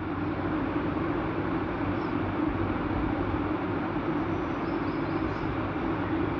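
Electric sewing machine running steadily as it stitches fabric.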